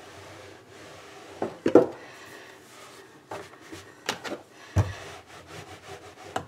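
Marble rolling pin rolling thin cracker dough out on a floured countertop: a low rubbing with several soft knocks.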